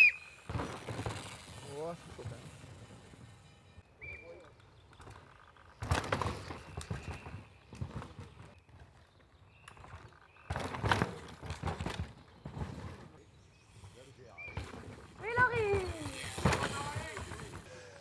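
Downhill mountain bikes passing one at a time through a dry, dusty corner, their tyres working the loose dirt, in three short, loud passes a few seconds apart. Voices call out in between, most clearly just before the last pass.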